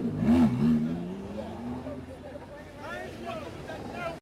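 Lamborghini sports car engine revving, its pitch rising and falling over the first second, then running more quietly as the car moves off. A man's voice near the end.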